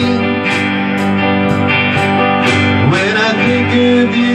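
Small live band playing an instrumental passage of a country-rock song: strummed acoustic guitar and keyboard over a drum kit keeping a steady beat.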